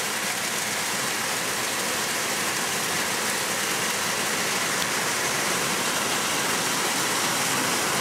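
Heavy hail and rain falling steadily on corrugated metal roofs, a dense, even hiss that holds without a break.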